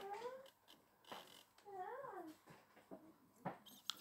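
Two faint, high-pitched cries, each rising then falling in pitch over about half a second, one at the start and one about two seconds in, with a few soft clicks between.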